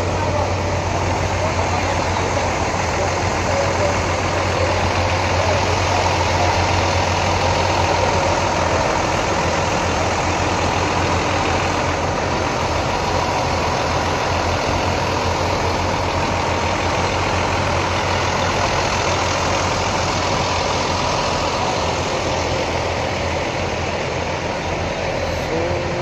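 Diesel engine of a coach bus idling steadily close by.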